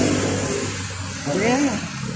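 A person's short voiced sound, rising then falling in pitch, about one and a half seconds in, over a steady low background hum.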